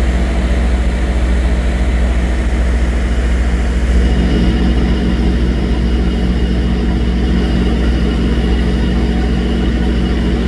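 Large diesel engine of a parked fire truck idling with a steady low rumble. A faint high whine joins about three seconds in.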